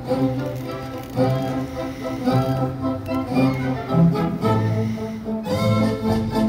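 Live orchestra playing dance music, with bowed strings, the cello and bass line carrying the low notes. The music jumps abruptly about five and a half seconds in.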